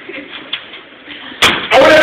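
A sharp knock about one and a half seconds in, then, just before the end, a man's voice starts loud through the microphone and PA in a drawn-out vocal sound. Before that there are only faint small sounds.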